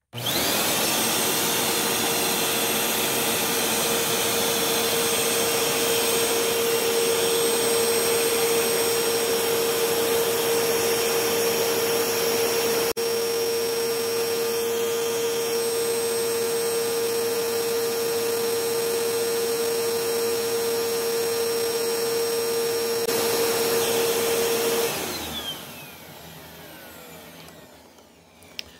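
Eureka Lightspeed 4700 upright vacuum starting up and running steadily, with a strong steady whine over the rush of air; its brush roll cannot be switched off and spins throughout. Near the end it is switched off and the motor winds down.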